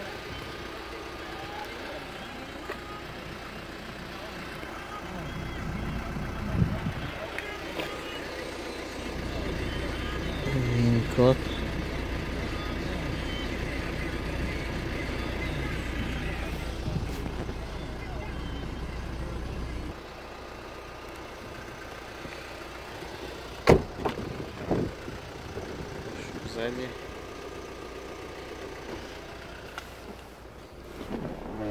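Car door and handling noises around a parked Hyundai Santa Fe over a low rumble. About two-thirds of the way in there is one sharp knock, followed by a few lighter knocks, as a rear door is opened.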